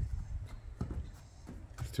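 A horse's hooves on dry dirt as it walks past close by: a few separate soft footfalls.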